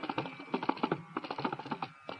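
Fast, dense flurry of Carnatic hand-drum strokes in the thani avartanam, the percussion solo for mridangam and kanjira. Crisp slaps follow one another closely over a ringing, tuned drum head, with a short pause at the end.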